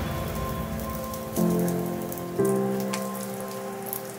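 Oil sizzling steadily in a hot stainless steel frying pan as stuffed shiitake mushrooms and mini bell peppers begin to fry, with a few small pops. Soft background music plays along.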